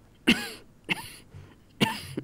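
A woman coughing, three short coughs spaced less than a second apart.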